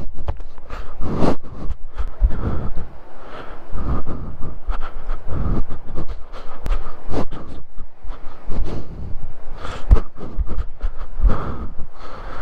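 Footsteps on a dirt and rock trail, heard close up, with clothing and gear rustling and knocking against the camera. Irregular thuds come about once a second over a rough, rubbing rumble.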